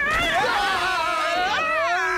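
Several cartoon characters screaming together in long, wavering wordless cries that slide up and down in pitch.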